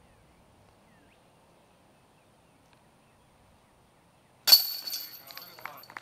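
About four and a half seconds in, a disc golf putter hits the chains of a disc golf basket with a sudden loud metallic crash. The chains rattle and jingle for about a second and a half as the putt drops in for a made birdie.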